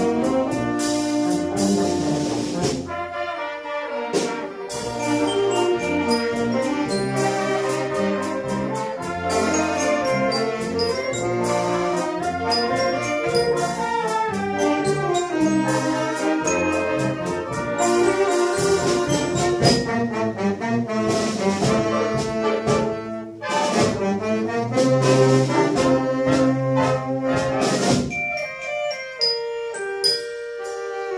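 Amateur brass band with trumpets, trombones, saxophones, tuba and drum kit playing a tune live, with a steady beat throughout and a brief pause between phrases about 23 seconds in.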